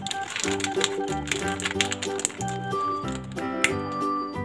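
Background music: a melody of short, separate notes over lower notes, with crisp clicks running through it.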